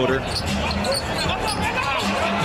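Basketball being dribbled on a hardwood court, a run of repeated bounces.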